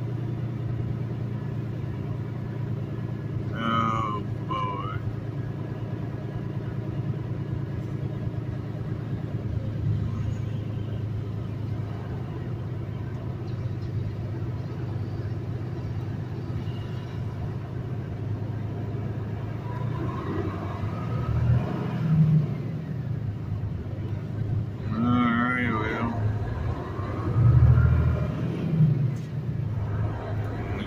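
Semi truck's diesel engine running steadily in the cab while crawling in slow traffic, a low hum that swells louder a few times in the second half. Brief voices are heard about four seconds in and again near the end.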